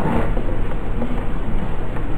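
Steady low rumbling background noise with hiss, with a few faint brief sounds in it and no speech.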